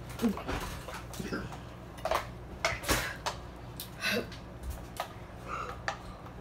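Two people drinking from plastic bottles without stopping: scattered short clicks and crackles of the plastic and gulping, about half a dozen sounds over the few seconds.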